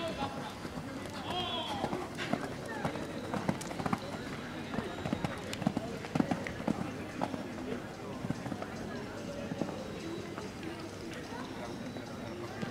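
People talking in the background, with a horse's hoofbeats on the sand arena footing as it canters around the course.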